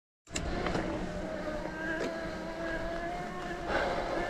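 Specialized Turbo Levo electric mountain bike's mid-drive motor whining steadily under pedalling, over a low rumble of wind and tyres rolling on grass. A few short knocks and rattles come from the bike over the bumpy path.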